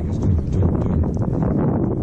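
Wind buffeting the microphone in a steady low rumble, with small waves lapping and knocking unevenly against the plastic hull of a pedal fishing kayak on choppy water.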